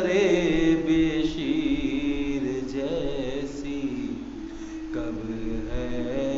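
A man's voice chanting a noha, a mournful lament recited in long, wavering held notes.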